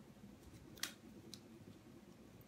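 Near silence: room tone with two faint short clicks, one just under a second in and a weaker one half a second later, from felt pieces and paper being handled on a table.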